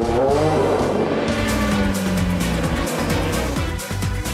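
DTM touring car racing sound, with engine noise and tyre squeal, mixed with background music that has a steady beat.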